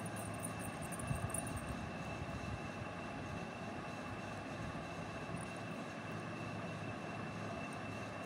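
Steady background hum with a faint, steady high-pitched whine running through it, and no distinct event.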